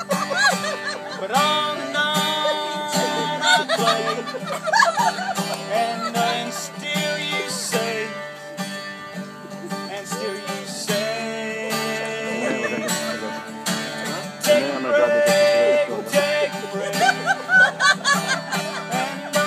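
Acoustic guitar played in an instrumental break of a country song, the strings picked and strummed, with some voices over it.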